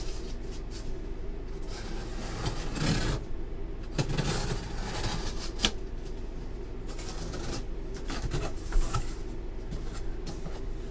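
A large cardboard box being handled and opened: cardboard scraping and rustling in a few spells, with a couple of sharp knocks, over a steady low hum.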